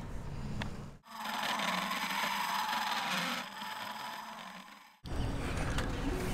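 Die grinder enlarging the hole in a small home-made metal washer: a steady whine with scraping for a couple of seconds, then quieter, broken off by abrupt cuts about a second in and near the end.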